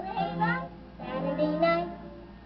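A young girl singing with musical accompaniment, on an old recording with muffled highs.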